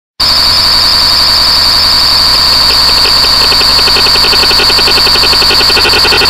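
Loud synthesized electronic tones: a piercing high steady tone layered with other held pitches over a noisy hum, joined about two and a half seconds in by a fast, even pulsing.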